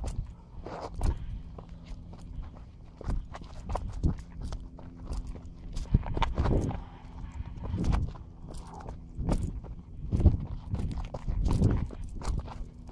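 Footsteps on loose, sandy dirt: uneven thuds and crunches about once a second.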